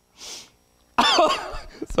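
A man draws a short hissing breath, then about a second in lets out a sudden, loud, throaty cough, clearing something stuck in his throat. A short laugh follows near the end.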